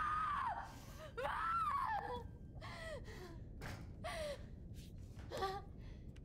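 A high-pitched voice giving a series of short, breathy cries, each rising then falling in pitch, about five in all, the first two loudest.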